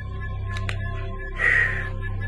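Steady background music with a single short crow-caw sound effect about one and a half seconds in.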